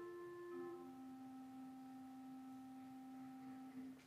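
Soft instrumental music: pure, sustained notes stepping down in pitch, three notes in all, the last and lowest held about three seconds before it stops.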